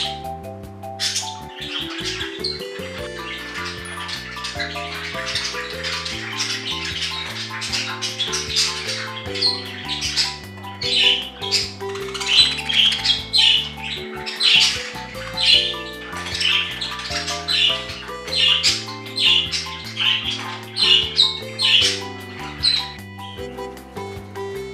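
Budgerigars chirping and squawking in many short, quick calls, coming more thickly from about ten seconds in, over background music.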